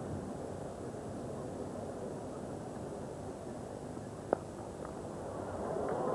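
Cricket-ground crowd ambience, low and steady, with one sharp crack of bat striking ball about four seconds in; the crowd starts to swell right at the end.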